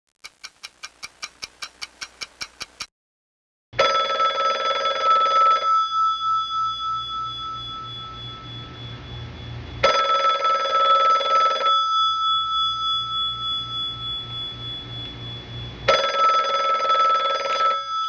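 A quick run of ticks, about five a second, then a telephone ringing three times: each ring about two seconds long with about four seconds between rings.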